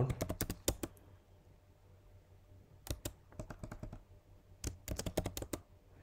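Computer keyboard typing, in three quick bursts of keystrokes separated by short pauses.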